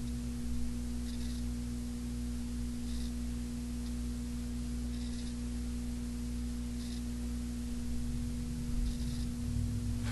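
Steady electrical hum with one strong constant tone and weaker tones above and below it, unchanging throughout, with faint soft hiss about every two seconds.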